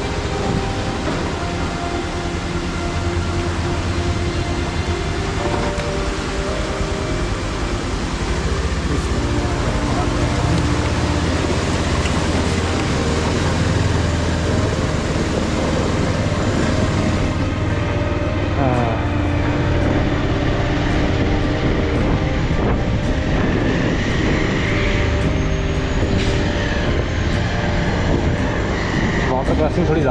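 Motorcycle engine running at low revs through a shallow water crossing, with the tyres splashing through water and crunching over gravel. The splashing hiss falls away about seventeen seconds in as the bike comes out of the water, and the engine runs on.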